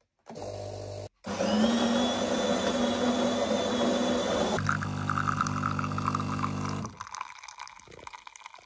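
Espresso machine making a decaf coffee: a steady motor whir, then from about halfway a deeper, even pump buzz. Near the end it drops to a quieter trickle as the coffee runs into the cup.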